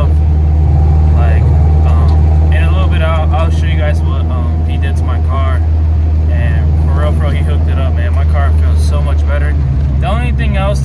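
Steady low drone of a Honda Civic EM1's B-series engine and tyre noise, heard from inside the cabin while driving, with a voice coming and going over it.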